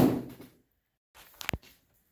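Handling sounds of a hollow-core door's wood panel: a short noisy thump at the start, then a single sharp click about one and a half seconds in.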